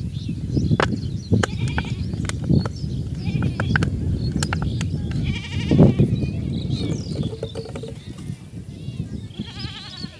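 Livestock bleating, once about halfway through and again near the end, over a steady low rumble of wind on the microphone. Sharp clicks of a plastic bottle being handled come in the first half.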